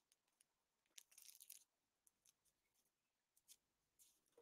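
Near silence: room tone with a few faint clicks, a small cluster of them about a second in.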